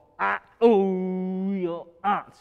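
A man scat-singing wordless jazz syllables: a short sung syllable, then one long held note lasting about a second that dips slightly at its end.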